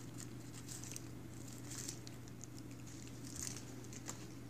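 A cat eating dry kibble off a plastic bubble mailer: soft, irregular crunching and ticking of kibble against the plastic, in a few short clusters.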